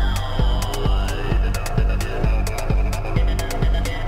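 Techno music played on synthesizers and drum machines. A steady kick drum beats a little over twice a second over a bassline, with hi-hat ticks between the beats and a high synth tone gliding slowly down.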